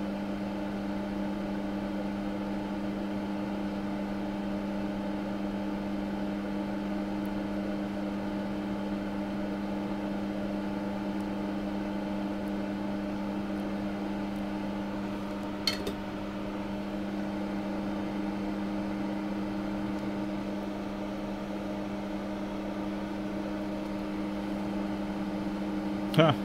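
Hot air rework station blowing at a low, slow airflow, a steady hum over a soft hiss, as it reflows solder paste on a BGA reballing stencil. One short click about 16 seconds in.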